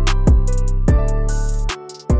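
Sad piano trap beat: piano notes over a deep, sustained 808 bass with crisp hi-hat ticks. Near the end the bass drops out briefly before the beat comes back in.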